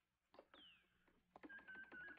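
Faint electronic computer-console sound effects as a code is keyed in: a short falling chirp, then, from about a second and a half in, rapid small clicks over a steady beeping tone.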